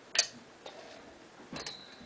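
A few sharp clicks: one loud click just after the start, a softer one about half a second later, and a quick double click near the end.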